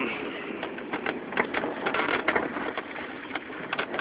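Steady vehicle and road noise with scattered irregular clicks and light knocks.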